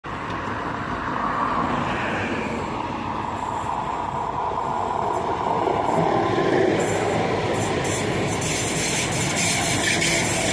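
Trenitalia Alstom Minuetto regional train, two units coupled, running past close by on the track with steady rolling noise. It grows a little louder about six seconds in as the units go by.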